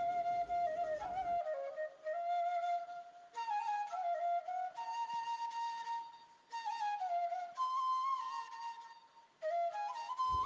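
Background music: a single melodic line played on a wind instrument, moving in short phrases of stepping notes with brief pauses between them.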